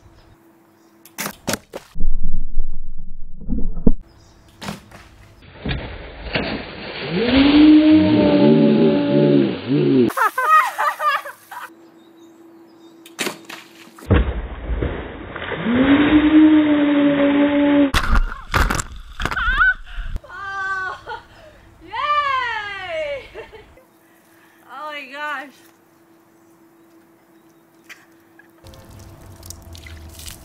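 A recurve bow shot at a water balloon triggers a big bucket of ice water, which crashes down onto a person with a loud rush of water. A long scream runs over the drenching, and high, falling squeals follow.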